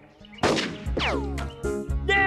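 A sudden cartoon gunshot bang about half a second in, then a falling whistle as the shot-down object drops, over background music with low notes.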